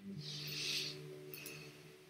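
An acoustic guitar chord ringing out faintly between sung lines of a song, with a brief hiss about half a second in.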